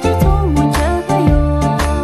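Tibetan pop song: a woman singing a melody with gliding ornaments over a steady beat of about two strokes a second and a bass line.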